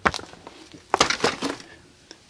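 A large cardboard software box being handled and set down on a desk, with a sharp knock at the start and a few more knocks about a second in.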